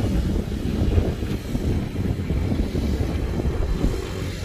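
Wind buffeting the microphone: a steady, uneven low rumble.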